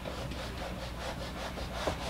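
Felt eraser wiping marker writing off a whiteboard in quick back-and-forth rubbing strokes.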